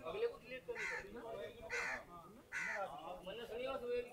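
Faint background chatter of a gathered crowd of men, with three harsh bird calls about a second apart.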